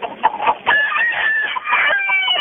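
A chicken calling down a telephone line during a 911 call. The sound is thin and narrow, and there is one long drawn-out call in the middle.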